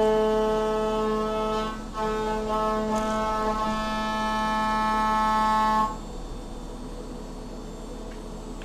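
CNC milling machine's end mill cutting an aluminium block, a loud steady pitched whine with a brief break just before two seconds in. The whine stops abruptly about six seconds in, leaving a quieter steady machine hum.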